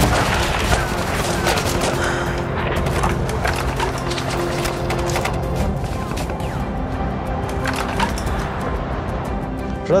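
Gunfire, many shots fired in quick succession at an irregular pace, over background music with held notes.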